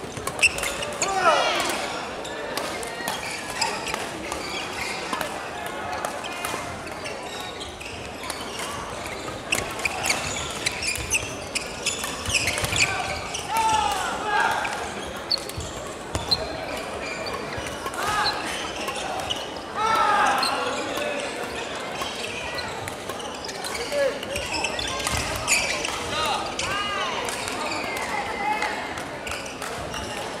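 Badminton doubles play in a large hall: repeated sharp racket hits on the shuttlecock and footwork on the court floor, mixed with the voices of players and people around the courts.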